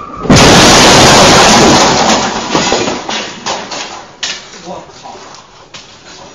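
A car crashing through an office wall: a sudden, very loud crash about a third of a second in that stays distorted for over a second. Then a clatter of falling debris and scattered knocks as it dies away.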